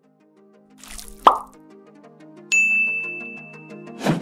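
Sound effects for an animated subscribe button over light, plucky background music. About a second in, a whoosh ends in a sharp pop. Then, about halfway, a high bell-like ding rings on for over a second and fades.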